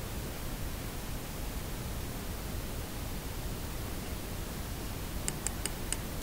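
Steady hiss of background room noise, then a quick run of five or six light, sharp clicks in the last second.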